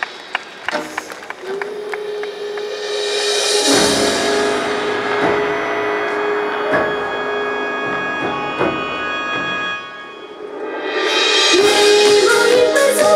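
Recorded yosakoi dance music played over the sound system: a long held organ-like chord with sparse drum strikes. It dips about ten seconds in, then the full music comes back loud near the end.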